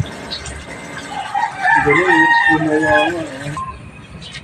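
A rooster crowing once, a wavering call of about two and a half seconds that starts about a second in.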